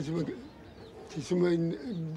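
An elderly man speaking slowly, not in English, in short phrases with his pitch often held level.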